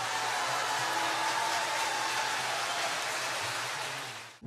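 Audience applauding steadily, easing off a little near the end.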